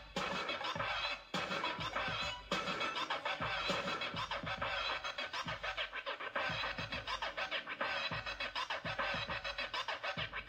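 Electronic music with turntable scratching and a fast, busy rhythm, dipping briefly twice in the first few seconds.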